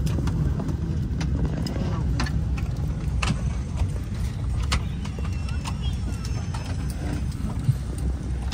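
Cabin noise inside a parked Boeing 747-8: a steady low rumble from the air system, with scattered clicks and clatter as passengers get up and take down their bags, over murmured chatter.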